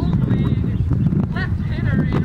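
Ballplayers yelling and cheering from the dugout in short bursts, over a steady wind rumble on the microphone.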